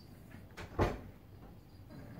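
A single dull thump just under a second in, preceded by a fainter knock.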